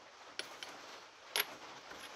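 A few faint, light metallic clicks as steel engine parts are handled and fitted onto a rotary engine's eccentric shaft: two small ticks about half a second in and a sharper clink near the middle.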